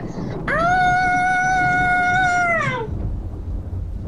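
A child's long cry of dismay: one held high note about two seconds long that rises at the start and sinks away at the end. A low rumble follows near the end.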